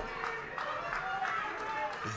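Outdoor football-ground ambience: a steady open-air hiss with faint, distant shouting voices from the pitch and stands.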